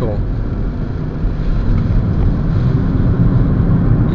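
Steady road and tyre noise inside the cabin of a moving VW Jetta, a low drone that grows slightly louder toward the end. The driver puts the loud road noise down to too little soundproofing in the floor pan.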